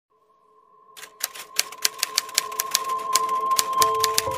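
Typewriter keystroke sound effect: quick, irregular clacks that start about a second in and grow louder, over a held background-music chord that fades in.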